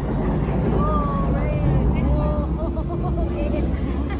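Busy themed-restaurant ambience: indistinct voices over a steady low rumble.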